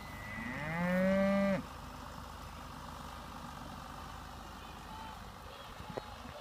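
A single moo from a bull, about a second and a half long. It rises in pitch at the start, then holds steady before cutting off.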